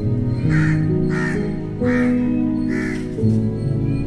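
A crow cawing four times, one harsh call roughly every three-quarters of a second, over background music of slow, held notes.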